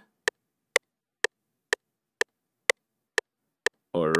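FL Studio's metronome clicking steadily at about two clicks a second, eight even clicks with silence between them, as the project plays back.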